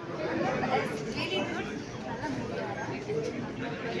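Several people talking at once, their voices overlapping in a busy hall.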